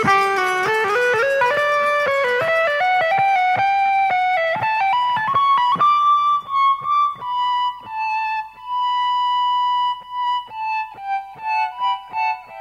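Instrumental progressive rock: an electric guitar plays a melody of quick picked notes climbing step by step, then slows into long held notes with short breaks between them in the second half.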